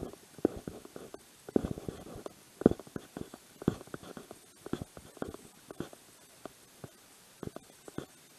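Muffled thumps and rubbing from a body-worn camera's microphone jostling as its wearer walks, coming irregularly about once a second, with the loudest thump a little before the middle.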